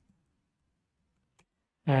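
Mostly quiet room tone with a single faint computer-keyboard keystroke a little past the middle, while code is being typed.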